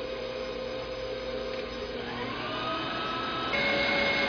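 Electric stand mixer's motor running steadily as it beats condensed milk and powdered sugar in a steel bowl. Its whine rises in pitch about two seconds in, then steps up higher and louder near the end as the speed is turned up.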